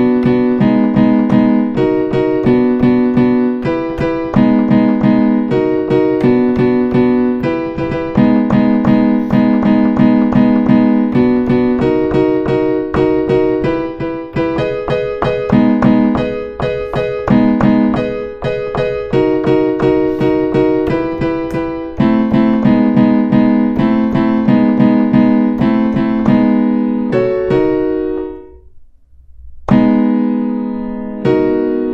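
Piano-sound chords played on an Arturia MicroLab MIDI keyboard through a software instrument, struck in a steady run. The sound dies away shortly before the end, then a fresh chord is struck.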